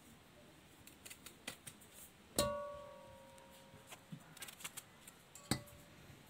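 A metal cooking pot is knocked and rings. The first knock, about two and a half seconds in, is the loudest and its ring fades over a second or so. A second, shorter knock and ring comes near the end, with faint small clicks in between.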